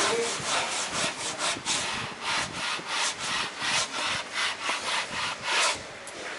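Hand-sanding a varnished teak board, sandpaper rubbing back and forth in even strokes about three a second, keying the varnish between coats.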